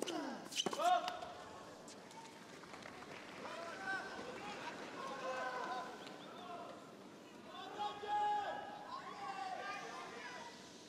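A tennis ball struck with a racket, sharp hits in the first second. Then spectators in the arena shout several overlapping, drawn-out calls of support.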